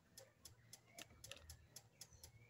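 Near silence, with faint, irregular light ticks scattered through it.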